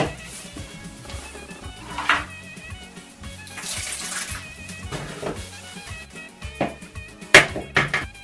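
Filtered water poured from a filter pitcher into a plastic bowl of thick spice paste, a short splashing pour about halfway through, with the paste being stirred with a spatula. Background music plays throughout, and a couple of sharp knocks near the end are the loudest sounds.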